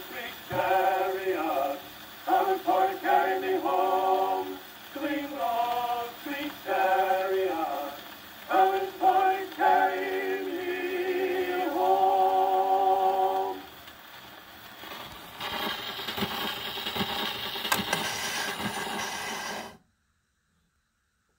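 Male vocal quartet singing in harmony on an old acoustic-era 78 rpm shellac record, with surface hiss behind the voices. About 14 s in, the singing ends and only the record's hiss and crackle remain, growing brighter until the sound cuts off suddenly just before the end.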